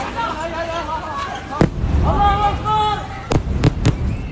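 Airstrike explosions in a phone recording: one sharp bang about one and a half seconds in followed by a low rumble, then three quick sharp bangs near the end. People's voices can be heard in the street throughout.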